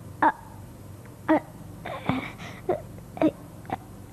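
A person crying in short sobs: about six brief, separate cries spread across a few seconds.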